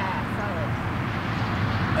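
Steady low outdoor background rumble with no distinct events, and a faint voice trailing off in the first half second.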